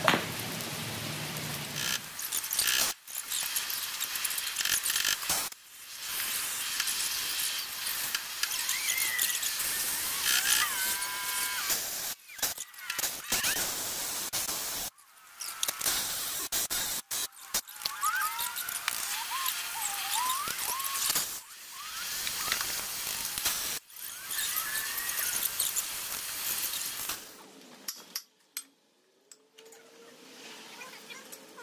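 Cordless impact wrench working the bolts on a bulldozer's track roller frame, in a string of runs a few seconds long with short breaks between them, and a few short squeals among them.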